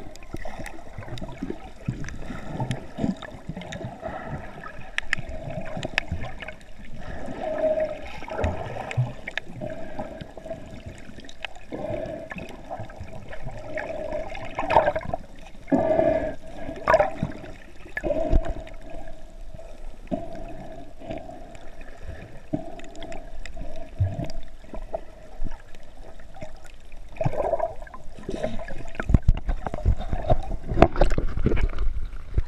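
Muffled underwater sound of water moving and bubbling against a submerged camera as a swimmer strokes close by, with a steady hum and scattered brief knocks.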